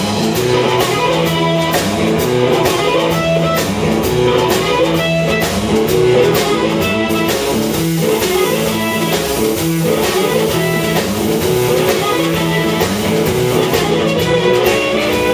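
Live blues band playing: amplified harmonica blown into a cupped handheld microphone over electric guitar and a drum kit, loud and continuous.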